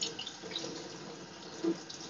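Kitchen tap running steadily, with a brief low thud near the end.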